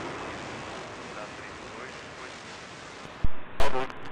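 Steady, fading roar of a departing Boeing 747 freighter's jet engines as it climbs away. Near the end, a click and then air traffic control radio speech cut in loudly.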